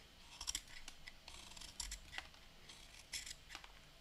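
Utility knife blade shaving the wood off a graphite pencil in short, faint scraping strokes, about six of them, carving a long, gradual taper toward the lead.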